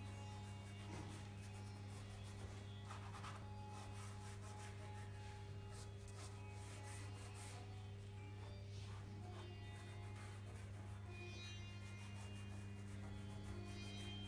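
Soft pastel rubbed and stroked across drawing paper in short, faint scratchy strokes, over a steady low hum.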